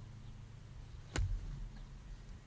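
A single sharp knock about a second in: a soft lacrosse ball striking the goalie's stick during a save.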